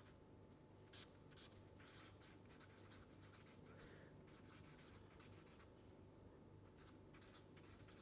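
Red permanent marker writing on paper: faint, short scratchy strokes as letters are written, a few louder ones about one and two seconds in.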